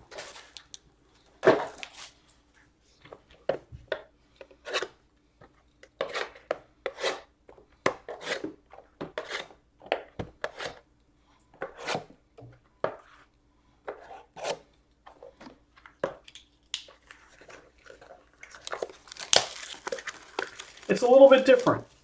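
Foil trading-card pack wrappers crinkling and tearing, with short clicks and taps as packs and cards are handled on a table, in scattered bursts. A man's voice comes in near the end.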